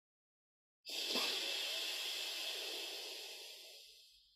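A forceful breath through one nostril during alternate nostril breathing: a rush of air that starts abruptly about a second in and fades away over the next three seconds.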